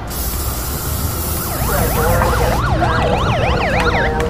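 An emergency-vehicle siren in a fast yelp, its pitch rising and falling about four times a second, comes in about a second and a half in over a steady low city-traffic rumble. A loud hiss fills the first couple of seconds and cuts off just after the siren starts.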